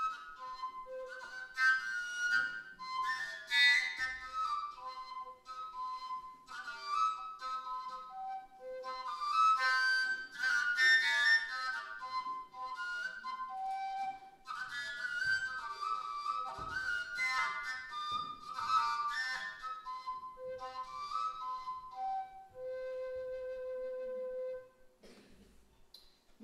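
Kalyuka, the Russian overtone flute, played solo: a quick, breathy folk melody whose notes jump between the pipe's overtones. It ends on a long held lower note shortly before stopping.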